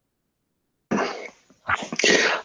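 Near silence, then a man coughs once, a short sharp cough about halfway in; a voice begins near the end.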